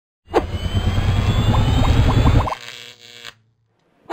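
Electronic intro sound logo: a sudden hit, then about two seconds of dense low rumble with rising whistling tones and a quick run of short notes. It cuts off about two and a half seconds in, leaving a brief fading tone.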